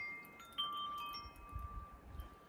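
Wind chimes ringing softly: a few single tones sound one after another, each ringing on for a second or more.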